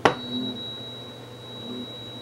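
An Iron Airsoft 51T flash hider, off the barrel, struck once with a click and then ringing on with a single high, steady ping like a tuning fork, slowly fading. It is the same ping this flash hider gives whenever the gas-blowback LM4 is fired or its bolt cycled.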